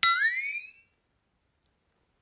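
A short ringing sound-effect chime: several high tones strike at once, the lowest sliding upward, and the whole dies away within about a second.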